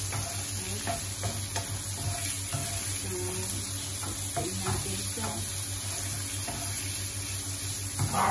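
Diced pork and onions sizzling in a non-stick wok, stirred with a wooden spatula, the steady frying hiss broken by light scrapes and taps of the spatula against the pan. The pork has just gone into the pan with the sautéed onions and garlic.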